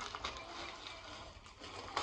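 Plastic poly mailer bag rustling as it is handled and opened, with a few faint crinkles.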